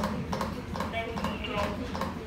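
CPR training manikin clicking under rapid, steady chest compressions, a quick even run of sharp clicks at about three to four a second, with voices counting along.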